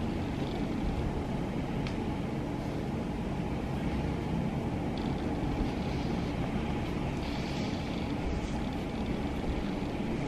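A steady low rumbling background noise with no change in level, broken by a few faint light ticks.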